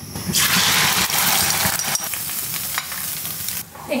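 Meat curry sizzling in an aluminium pot while a metal spoon stirs it: a steady hiss that starts just after the beginning and cuts off suddenly shortly before the end.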